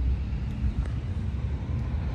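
A low, steady rumble, the sound of a vehicle running somewhere off-screen, with a faint hum that fades out partway through.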